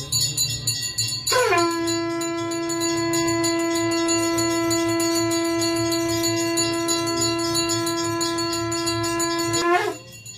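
Conch shell (shankh) blown in one long steady note lasting about eight seconds, starting about a second in with a short downward slide in pitch, then breaking off near the end.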